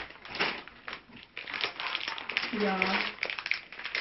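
Plastic shopping bag and food packaging rustling and crinkling as groceries are pulled out of the bag.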